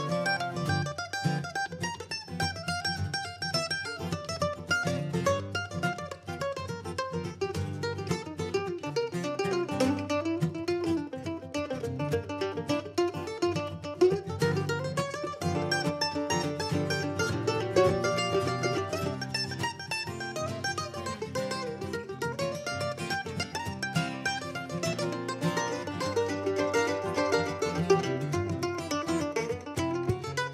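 Instrumental break played on mandolin and acoustic guitar: the mandolin picks quick runs of notes over a steady strummed acoustic guitar rhythm.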